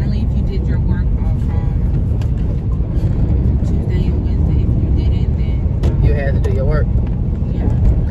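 Steady low rumble of a car moving along the road, heard inside the cabin, with brief low voices now and then.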